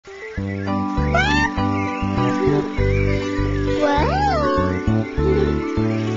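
Background music with a steady, pulsing bass line. Two short sliding sounds rise and fall in pitch over it, about a second in and again about four seconds in.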